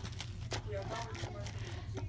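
Faint handling noise: light ticks and rustling of packaging and small accessories being moved about, over a low steady hum, with a faint voice in the background.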